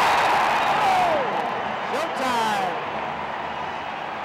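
Basketball arena crowd cheering and yelling after a basket, loudest at the start and easing off, with single shouts rising above the roar.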